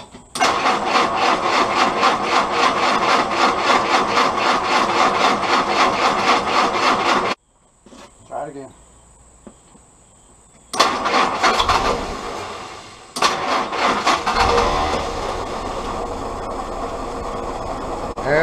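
Willys L134 Go Devil four-cylinder engine being cranked over by its starter in a long rhythmic spell. After a break it is cranked again, then catches and settles into running with a low rumble near the end.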